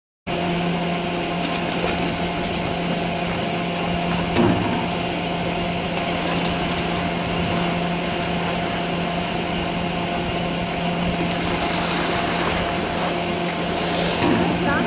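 Doppelmayr surface lift's bullwheel station running: a steady mechanical hum that cuts in just after the start, with one brief knock about four seconds in.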